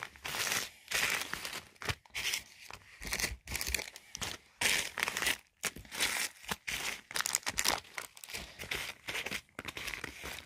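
Clear plastic pocket-letter sleeves and small plastic bags of sequins crinkling and rustling as they are handled, in short irregular rustles with brief pauses.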